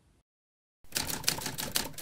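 After a moment of dead silence, a rapid run of sharp clicks, about eight a second, like typewriter keys, starts just under a second in and goes on to the end.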